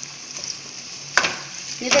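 Chopped vegetables (onion, carrot, capsicum, green chilli and grated potato) frying in hot oil in a non-stick pan, with a steady sizzle. A single sharp click comes a little past halfway.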